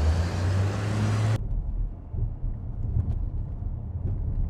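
A John Deere wheel loader's diesel engine running as the loader drives away, a steady low hum with broad road noise. It cuts off abruptly about a second and a half in, giving way to the low rumble of a car driving, heard from inside the cabin.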